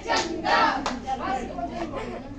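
A couple of sharp hand claps among a group of women's and girls' voices.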